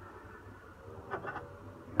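Faint steady electric hum from a tabletop electric furnace holding at its set temperature of about 200 °C, with a few soft short sounds a little past halfway.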